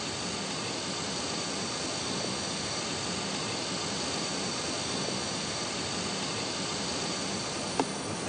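Steady, even hiss of background noise in a silent room, with faint high steady tones above it. A single brief click comes near the end.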